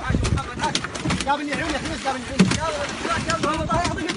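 Many men's voices shouting and calling over one another, with water splashing and several sharp knocks, the loudest a little past the middle.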